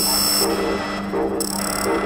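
Experimental electronic music: a steady low drone under a short pulsing tone that repeats about every 0.7 seconds, with two brief bursts of high hiss, one at the start and one about one and a half seconds in.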